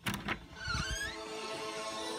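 A door latch clicks and the door is pushed open with a short, gliding squeak of its hinges, then music starts playing.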